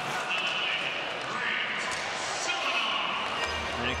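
Ice hockey arena sound during live play: a steady crowd murmur, with skates scraping and sticks and puck clicking on the ice.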